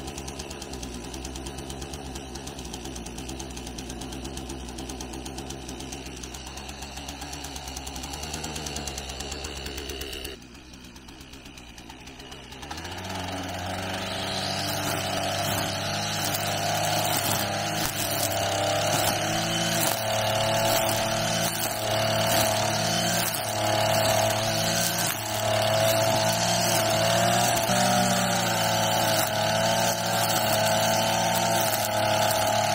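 Gasoline brush cutter (string trimmer) engine catching and idling steadily. About a third of the way in it is throttled up to cutting speed and runs loud and high, rising and falling as the head cuts through grass.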